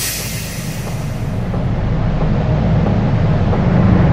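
A low, noisy rumble sound effect for a logo intro, building slowly and beginning to fade near the end.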